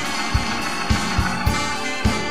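Live band music: a saxophone over a drum kit and keyboards, with the kick drum keeping a steady beat about every half second.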